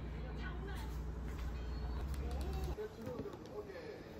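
Muffled talk from a TV variety show playing in the room, over a steady low hum that cuts off about three quarters of the way through.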